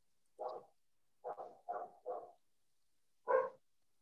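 A dog barking in the background in short single barks: one, then a quick run of three or four, then a louder single bark near the end.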